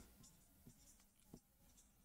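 Near silence, with faint strokes of a marker writing on a board.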